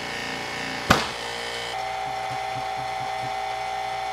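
Rotary vane vacuum pump running steadily with a low, even throb, as it pulls down a chamber that the owner suspects has a leak. There is one sharp knock about a second in, and a steady higher tone joins a little later.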